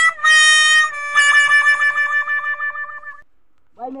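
'Sad trombone' comedy sound effect: descending 'wah-wah' notes, the last one held with a wobbling vibrato and fading out about three seconds in, the usual comic signal of a failure. A voice shouts briefly at the very end.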